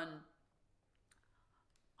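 A woman's drawn-out word trails off at the start, then near silence broken by a few faint clicks, a pair about a second in and another pair near the end.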